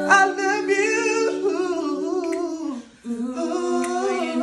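Several boys' voices singing wordless a cappella harmonies, holding long notes that slide in pitch, with a brief break about three seconds in before the voices come back in.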